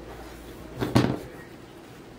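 A red plastic ruler being picked up and moved over the table, knocking once with a short double clatter about a second in.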